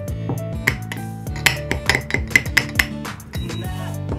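Background music, with a quick run of light clinks in the middle from a metal measuring spoon knocking against the mouth of a narrow glass jar as it fails to fit inside.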